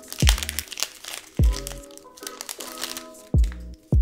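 Foil booster pack crinkling as it is torn open and the cards slid out, over background music with a deep drum beat and held chords.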